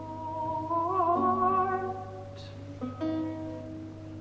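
Lute playing slow plucked notes that ring on, with a countertenor voice holding a wavering sung note over it about a second in.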